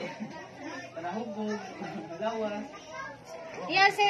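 Chatter of several people's voices, with a louder, higher-pitched voice rising near the end.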